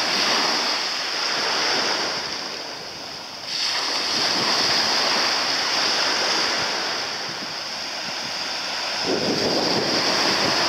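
Wind blowing over the microphone mixed with the wash of the sea, a steady rush that swells and eases, rising suddenly about three and a half seconds in.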